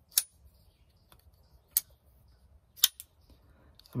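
Small titanium-handled folding knife being flicked open and shut: three sharp metallic clicks of the blade snapping out and locking or snapping closed, the first near the start, then about a second and a half later and a second after that, with a few fainter ticks between.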